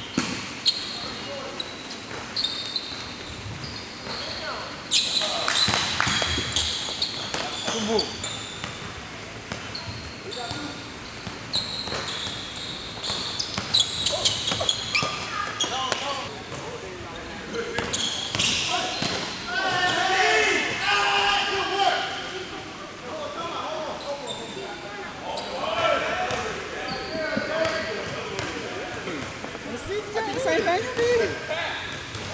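Basketball bouncing on a gym floor during pickup play, with sharp knocks through the whole stretch. Players' voices call out indistinctly, most in the second half.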